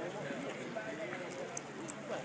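Indistinct chatter of several people talking at once outdoors, with a few short sharp clicks near the end.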